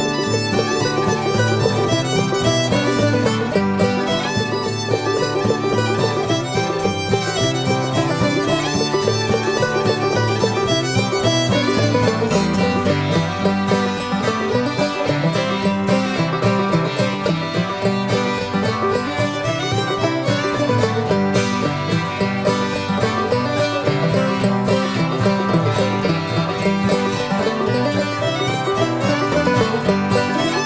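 Old-time string band playing a lively fiddle dance tune on fiddle, banjo, hammered dulcimer and guitar.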